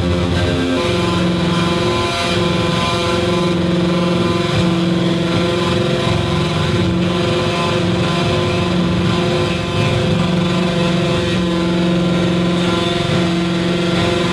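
Electronic noise music from cracked everyday electronics: a loud, dense drone of layered steady hums and buzzing tones. The lowest pitch drops a step about a second in and then holds.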